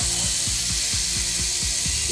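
Thinly sliced beef brisket sizzling on a hot tabletop grill, a steady hiss, over background music.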